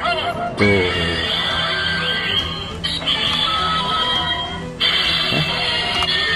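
A knockoff DX Ultraman Taiga Spark toy plays its electronic sound effects and jingle through its small speaker after a Taiga bracelet accessory is loaded into it. The sound changes abruptly in several sections, about a second in, near the middle and near the end.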